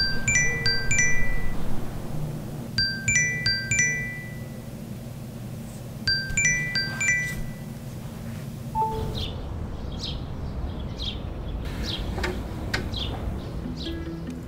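A phone alarm chime: a quick run of bell-like notes, repeated three times about three seconds apart over a low steady hum, then stopping. Soft rustling and handling follow, as the phone is picked up from the bed.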